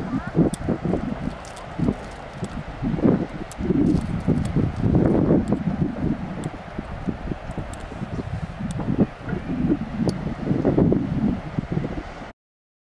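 Wind buffeting the microphone in irregular gusts, a low rumble that swells and drops every second or so.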